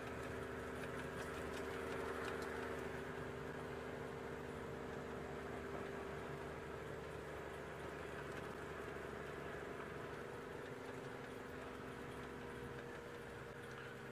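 Open-top safari vehicle driving along a dirt track: its engine runs with a steady hum under road and wind noise, fading slightly toward the end.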